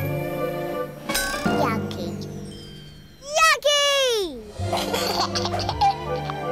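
Cheerful cartoon background music drops away near the middle for a baby's vocal exclamation, a short call that lifts and then glides down in pitch. The music then comes back in.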